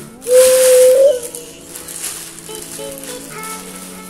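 Styrofoam packing and plastic wrap being pulled off a loudspeaker cabinet: a loud squeak of foam rubbing, about a second long, with a rustling hiss just after the start, then quieter rustling. Background music plays throughout.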